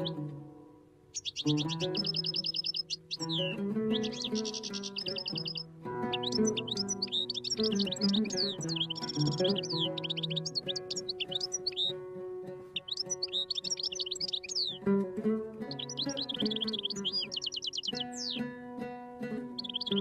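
Solo oud improvisation (taqasim), with plucked notes that ring on. Over it a songbird sings rapid chirps and trills in repeated bursts.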